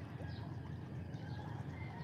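Small waves washing among the rounded stones of a rocky shore, a steady low rumble, with faint high bird chirps over it.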